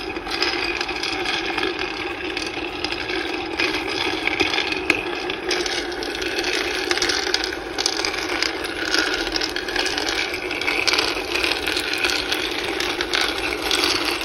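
Chulucanas cocoa beans rattling and scraping as the roaster's stirring arm sweeps them around the non-stick pan during a gentle roast: a steady, dense clatter of many small knocks.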